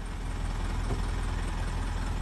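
Truck engine idling steadily with a low, even rumble.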